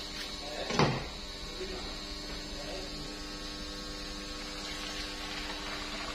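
Steady electrical hum with one sharp knock just under a second in, while a large yellowfin tuna is being handled and cut open on the table.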